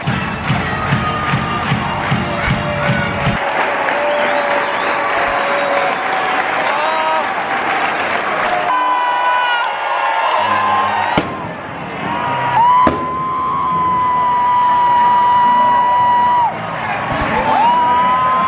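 Music with a heavy beat that cuts off about three seconds in, under a crowd of fans singing and cheering. In the second half a voice holds a long, high sung note.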